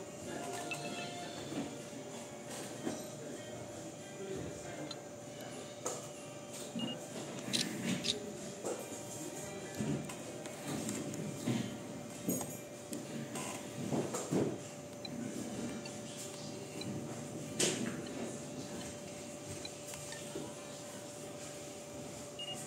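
Olympus SP-600UZ compact superzoom camera being handled and operated: scattered clicks and knocks from its buttons and body, over a steady faint hum.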